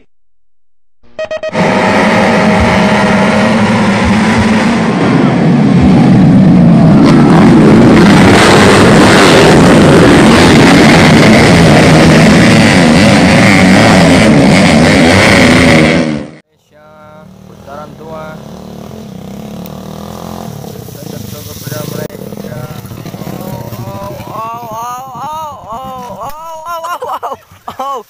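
A pack of motorcycles accelerating hard off the start, their engines very loud and dense, cutting off suddenly about sixteen seconds in. After that, quieter motorcycle engine sound with voices near the end.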